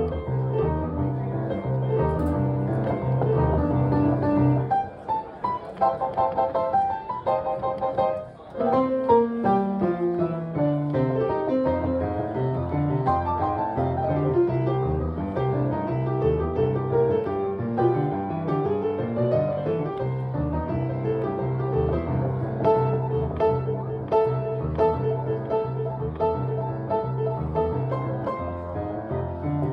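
Solo acoustic piano played live: a steady repeating left-hand bass pattern under right-hand melody and chords. About five seconds in the bass drops out for a few seconds, then a descending run leads back into the bass pattern.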